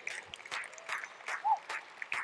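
Applause in response to a question put to the audience: a run of separate hand claps, moderately loud, with a short voiced call about one and a half seconds in.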